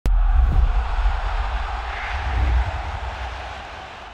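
Intro sound effect: a whooshing noise over a deep bass rumble that starts suddenly and slowly fades away.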